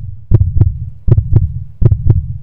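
Dramatic background score: three pairs of deep drum thumps in a heartbeat rhythm, about one pair every three-quarters of a second, over a low steady drone.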